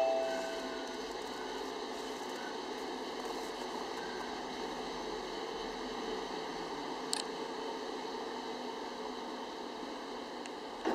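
The last struck note of a glockenspiel-like chime dies away in the first half-second, then a steady, even background noise, with one short click about seven seconds in.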